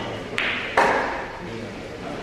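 Pool balls clicking: the cue ball strikes an object ball with a sharp click about half a second in, followed by a louder knock that fades away, over low voices in the room.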